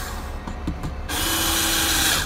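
Cordless drill-driver run in one steady burst of about a second, starting about halfway through, driving a screw. Softer handling noise comes before it.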